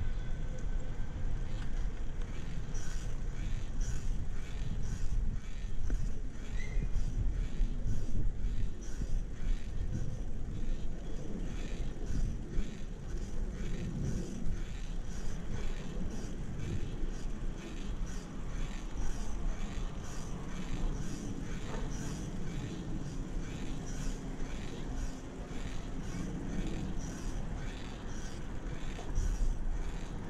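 Wind buffeting the microphone and tyre-on-pavement rumble from a bicycle moving along a road, with faint regular ticking throughout.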